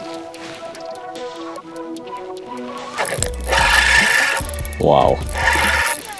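Background music, then about halfway through a louder stretch of mechanical whirring from a spinning reel being cranked against a hooked walleye, over a low rumble, with a short shout near the end.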